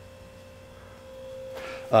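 Quiet room tone with a faint steady high hum and a low hum beneath it; some noise builds up in the last second.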